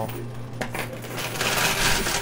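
Coin pusher machine running with a low steady hum while coins clink and slide on the playfield, swelling into a denser clatter of coins in the second half.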